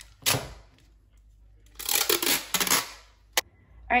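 Clear mailing tape pulled from a handheld dispenser and torn off: a short rip just after the start and a longer run of ripping about two seconds in, then a single sharp click near the end.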